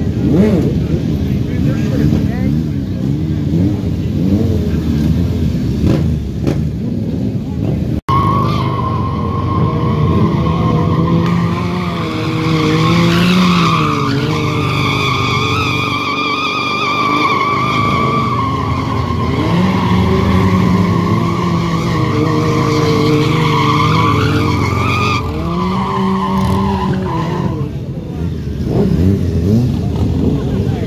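Sport-bike engines revving hard during stunt riding. About eight seconds in the sound changes abruptly to one engine held at high, slightly wavering revs for some fifteen seconds before it drops away.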